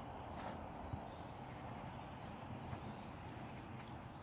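Faint, sparse touches of a football being dribbled on artificial turf, a few soft taps a second or so apart, over a steady low outdoor background hum.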